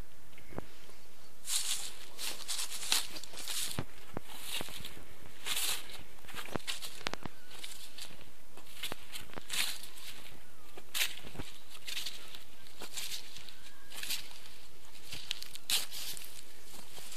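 Footsteps crunching and rustling over thawing ground of soil, dry grass and melting snow patches, an uneven step every half second to a second, starting about a second and a half in.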